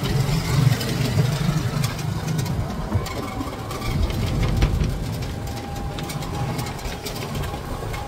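Ride noise inside the cabin of a moving Mayuri electric cargo three-wheeler (battery-driven, no engine): a steady low rumble from the tyres and chassis on the road, with a few light rattles.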